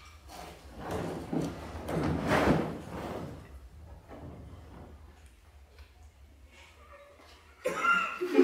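Rubbing and scraping against a hard plastic drum case as a person shifts his head and hands on it, a few seconds of movement noise. A burst of laughter breaks out just before the end.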